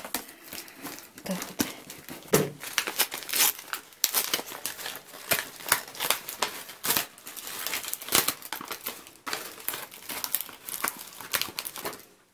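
Newspaper and plastic wrapping crinkling and rustling in the hands as a packed plant cutting is unwrapped, in quick irregular crackles.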